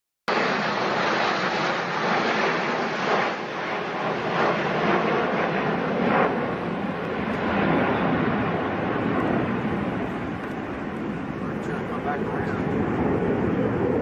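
Military jet fighters flying overhead: a steady wash of jet engine noise, mixed with wind on the microphone. It starts abruptly just after the start.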